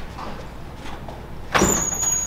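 A classroom exit door is pushed open about one and a half seconds in: a sudden loud burst of sound with a thin, high, steady whine over it, against a low steady hum.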